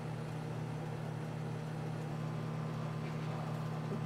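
Steady low hum of room tone with no distinct sound events.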